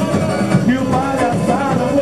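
Samba-enredo played by a samba school in parade: a voice singing the melody over the school's percussion band, loud and continuous.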